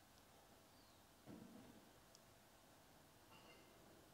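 Near silence: the faint steady hiss of the RØDE Wireless Go and Fuji X-T3 recording chain's noise floor at a low recording level. A faint short sound comes about a second in, and fainter short tones come near the end.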